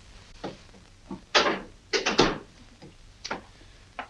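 A few short rustles and knocks of movement, the most prominent cluster a little after halfway, over a low, steady room hum.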